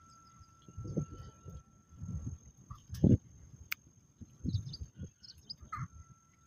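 A freshly caught fish being handled on grassy ground: irregular soft thumps and rustling, one stronger thump about three seconds in.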